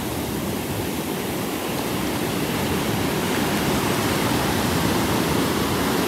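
Ocean surf washing in over the sand: a steady rush of breaking waves and foam, a little louder in the second half.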